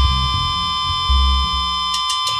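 Sparse passage in a hardcore punk track: held low bass notes change every half second or so under a steady, high, ringing amplifier feedback tone. Near the end, a drumstick click begins a count-in.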